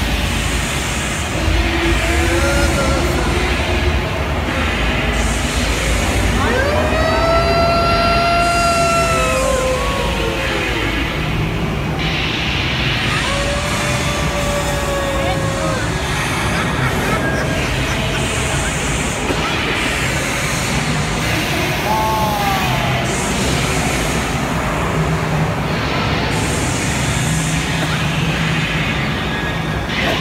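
Loud, steady rumble and noise of a theme-park dark ride running through its dark section. Over it come a few drawn-out cries: a long one about seven seconds in and shorter ones around fourteen and twenty-two seconds.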